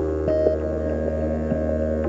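Ambient electronic drone from a live synthesizer rig: a deep steady hum under a dense cluster of held tones, with a few short notes blipping in.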